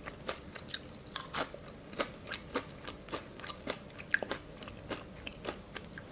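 Close-miked crunching and chewing of crisp fried spiral potato chips: irregular sharp crunches, several a second, with a louder one about a second and a half in.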